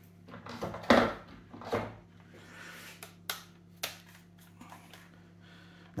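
Handling noise from an airsoft rifle and hand tools on a tabletop: a few separate light knocks and sharp clicks with some soft rustling, over a faint steady low hum.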